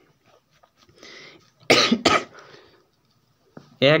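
A man coughing twice in quick succession, about halfway through.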